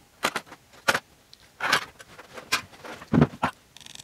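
Workbench handling noise: about six sharp clicks and knocks spread over a few seconds as a metal two-stroke cylinder and small hand tools are picked up, knocked and set down. A short scraping sound comes right at the end.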